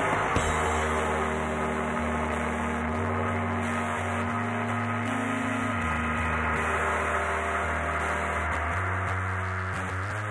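Live rock band playing a slow, sustained passage with no singing: an electric bass holds long low notes that step to a new pitch every second or two, under held, ringing guitar chords.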